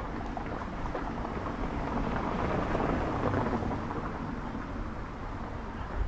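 A car driving past on a cobblestone street, the tyre noise on the cobbles building to a peak about halfway through and then fading.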